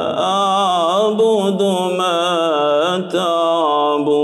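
A man reciting the Quran in a melodic, chanted style, holding long ornamented notes that waver up and down in pitch, amplified through a handheld microphone. There is a brief break for breath about three seconds in.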